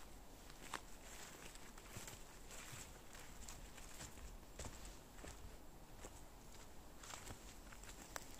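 Faint, irregular footsteps on a mossy forest floor littered with needles and twigs, with small crunches as the steps land.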